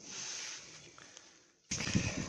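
Rustling handling noise: a short hiss at the start, then near the end a sudden, louder rough rustle as a jacket sleeve brushes close to the phone's microphone.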